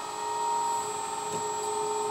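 The electric hydraulic pump of a LESU RC Komatsu PC360 excavator running, a steady whine while the boom and arm are worked from the transmitter.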